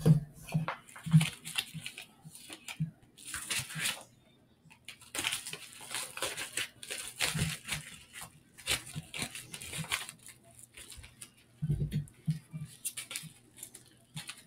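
Irregular rustling and crinkling handling noise in uneven bursts, with scattered sharp clicks.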